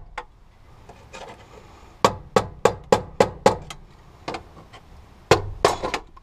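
A hammer strikes the end of a screwdriver set against a fuel pump lock ring, knocking the ring round to loosen it. After a quieter first second or two comes a run of about six sharp blows at roughly three a second, then two or three more near the end.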